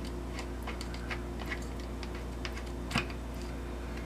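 Faint, irregular clicks and ticks of a small plastic hummingbird feeder's red base being unscrewed from its bottle, with the sharpest click about three seconds in. A steady low hum runs underneath.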